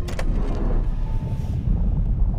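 Deep, steady rumble of a wall of flowing lava in the film's soundtrack, opening with a brief sharp sound.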